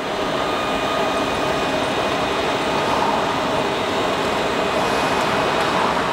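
A tram standing at a stop, its onboard equipment giving a steady, even noise with a faint high whine over street sound.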